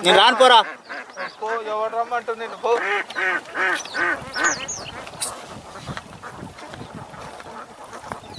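A man speaking in short phrases, falling to a quiet background for the last few seconds, with a few faint high chirps about four and a half seconds in.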